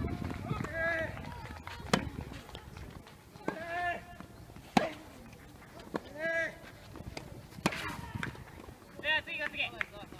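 Tennis rally: a ball struck by rackets three times, sharp hits about three seconds apart, with short shouts from voices between the strokes and a quick burst of shouting near the end.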